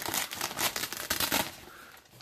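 White fabric diffuser of a photo softbox rustling and crinkling as a hand pulls it aside, a quick run of crackles that dies away about one and a half seconds in.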